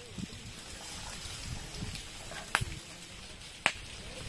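Wind buffeting the microphone over a small open fire of leaves and sticks burning under a pot of roasting cashew nuts, with a steady hiss. Two sharp pops, about a second apart, stand out near the end.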